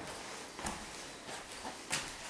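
Footsteps on tatami mats: a few soft, irregular steps, the last one the loudest, near the end.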